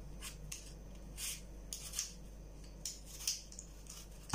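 Vegetable peeler scraping the skin off an apple: a run of short, irregular strokes of the blade.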